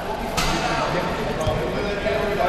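Several men talking in a large gym hall, with one sharp slap a little under half a second in and a dull thump about a second later.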